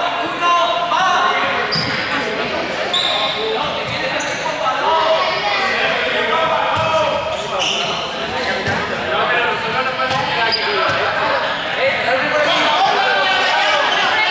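Many young people's voices talking and calling out over each other in an echoing sports hall, with balls bouncing on the floor.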